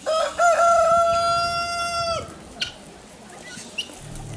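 A rooster crowing once: a few short rising notes run into one long held note lasting about two seconds, which drops off at the end.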